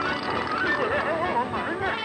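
A whinny-like warbling cry that wavers up and down in pitch for about a second and a half, starting about half a second in.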